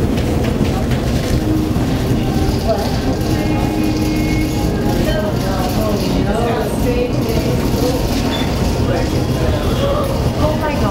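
Indistinct voices over a loud, steady low rumble of store background noise, with a steady tone held for about three seconds in the first half.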